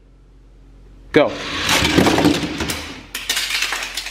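Four die-cast Hot Wheels cars rolling down an orange plastic four-lane track, a rushing rattle that builds and fades over about a second and a half, then a run of sharp clacks near the end as they reach the end of the track.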